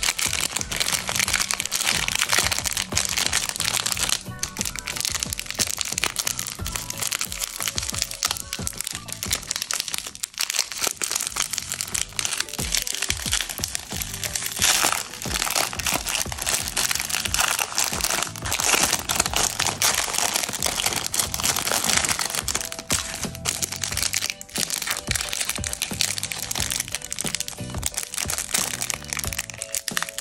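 A Kinder Bueno's plastic wrapper crinkling and crackling as it is pulled open by hand, and later a clear cellophane candy bag crinkling, over background music.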